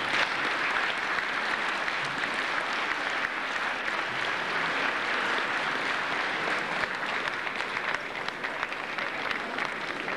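A large audience applauding steadily, a dense clatter of many hands, easing slightly near the end.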